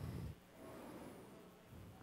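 Faint room tone in a pause in speech, with the low tail of the last word dying away at the start.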